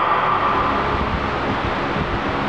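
Steady rushing noise with a low rumble, about as loud as the talk around it: air noise on the microphone, with electric standing fans running in the room.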